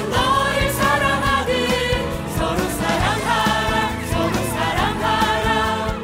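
Music with a choir singing, steady throughout.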